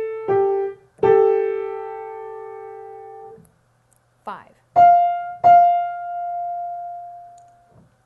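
Piano playing single intervals for ear training: two notes struck one after the other, falling in pitch, then sounded together and held about two seconds. About five seconds in, another pair of notes is struck in quick succession, and the second rings on while fading.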